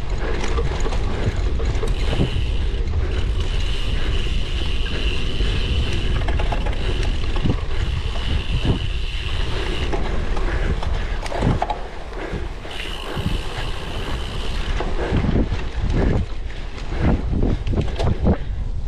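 Wind buffeting the microphone and a bicycle rattling over bumpy grass and dirt while ridden at race pace, with scattered knocks from the bumps. A high steady whine holds through much of the first half and comes back briefly later.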